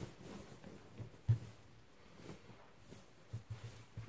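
Quiet rustling of a cotton sheet being handled and spread out by hand, with a soft thump about a second in and a few light knocks near the end.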